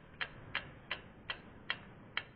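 Quiet, clock-like ticking sound effect from an animated logo sting, about three sharp ticks a second at an even pace.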